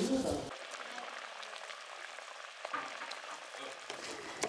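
Thick menaskayi gravy boiling in a pan: a faint, even sizzling hiss with light crackles, starting about half a second in.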